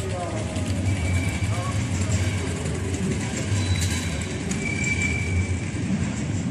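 Street ambience: indistinct voices of passers-by over a steady low rumble of traffic.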